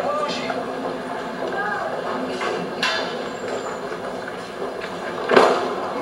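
Steady murmur and room noise from a seated audience in a gymnasium, with a loud thud about five seconds in as a karateka is thrown to the floor with the technique byōbudaoshi.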